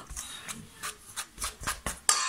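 Metal fork stirring flour and water in a stainless steel mixing bowl: a quick, irregular run of scrapes and light clicks as the fork catches the bowl.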